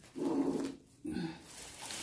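Two short low vocal sounds, then a thin plastic shopping bag crinkling as a hand rummages in it near the end.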